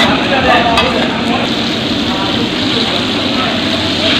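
Hilsa fish pieces sizzling as they fry in hot oil on a large flat iron pan, with a metal spatula scraping across the pan as it pushes and turns them.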